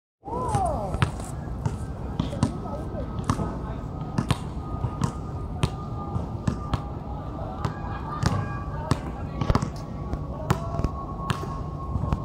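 Basketballs bouncing on an outdoor hard court: a run of sharp, irregular thuds, roughly one to two a second, as players dribble and shoot.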